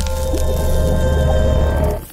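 Logo intro music and sound design: a deep, loud low drone under several held tones and a splashy wash, dropping away at the end.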